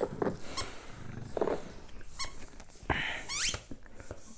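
Small dog at play, making short high squeaks, the loudest a rising squeak near the end, over light rustling.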